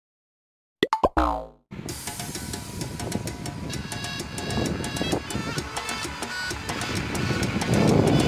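About a second in, a few sharp clicks and a short falling twang, a comic sound effect, then upbeat background music with a steady percussive beat.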